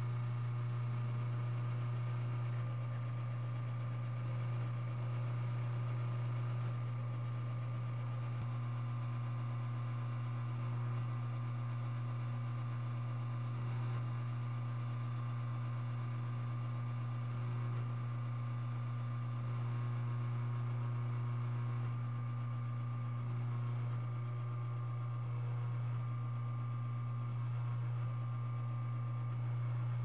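Rocket R60V espresso machine's pump humming steadily while an espresso shot is extracted at the nine-bar stage of a pressure-profiled shot.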